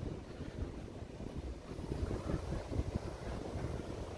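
Wind buffeting the microphone in irregular low rumbles, over a faint wash of ocean surf breaking on the beach.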